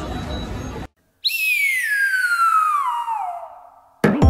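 Background room noise cuts off abruptly about a second in. Then a whistle sound effect plays: one long tone sliding steadily downward from high to low and fading out.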